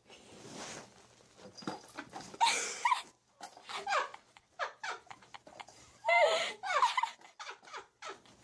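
A small pet making several short, wavering, whining calls, the loudest about six seconds in, with soft rustling between them.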